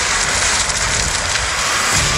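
Film trailer sound effect of a large fire burning: a steady, loud rushing crackle.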